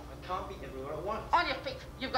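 Speech: two short spoken phrases with a pause between them.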